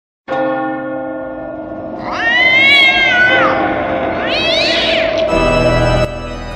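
Spooky sound effects: a bell struck once and ringing on, with two long wailing yowls over it, each rising and then falling in pitch, and a second, deeper stroke near the end.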